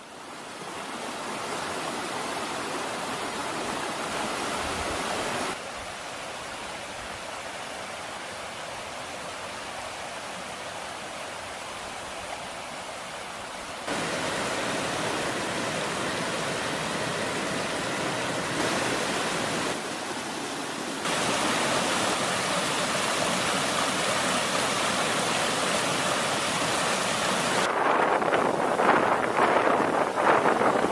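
Shallow creek water running over rocks: a steady rush that jumps in level at several cuts, turning louder and more uneven near the end.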